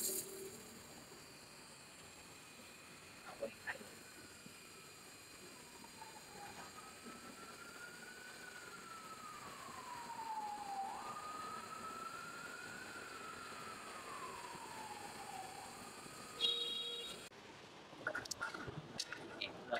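A faint siren wailing, its pitch slowly rising and falling twice, over a faint steady hiss from the handheld fiber laser welding that cuts off shortly before the end. A couple of clicks come about three and a half seconds in, and a short beep near the end.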